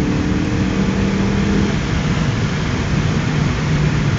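Car engine pulling under full throttle in third gear, over a steady rush of road noise; its note drops lower about halfway through.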